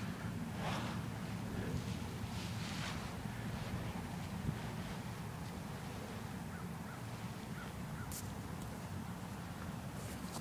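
Wind rumbling on the microphone, a steady low rumble with only faint sounds above it.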